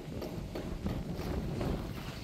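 Scattered light taps and clicks at an irregular pace, over a low rumble of wind on the microphone.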